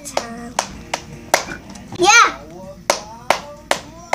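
Several sharp hand claps, irregularly spaced. About two seconds in comes one short child's vocal squeal that rises and falls in pitch.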